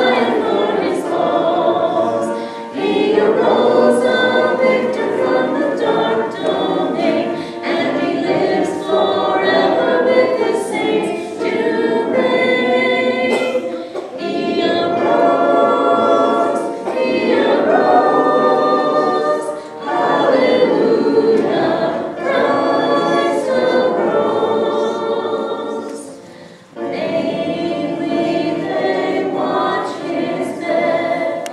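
A choir singing in sustained phrases of a few seconds, with short breaks between phrases.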